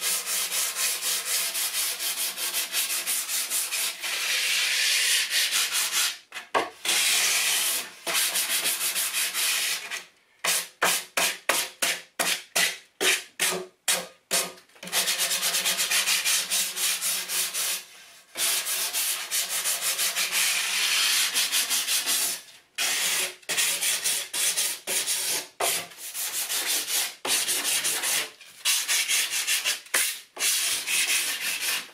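Hand sanding a southern yellow pine board with 120-grit sandpaper wrapped on a small block, smoothing a sawn edge. A rasping back-and-forth rub in repeated strokes with short pauses, and a run of quick short strokes about a third of the way in.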